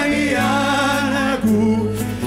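A live Arabic worship song: a male lead voice and a group of voices sing together over a small band with sustained low notes underneath.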